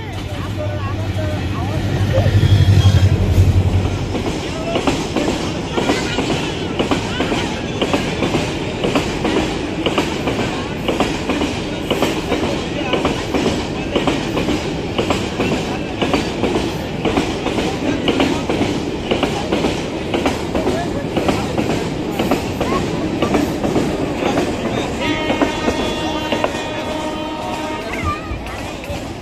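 Diesel locomotive of an oil tank-wagon train passing close by with a loud low engine hum for the first few seconds. Then the long train of tank wagons rolls by with a steady, rhythmic clickety-clack of wheels over rail joints. A sustained high-pitched tone joins about three seconds before the end.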